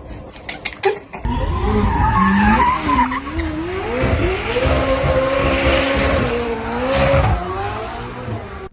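Sports car drifting, starting about a second in: the engine revs up and down over squealing tyres.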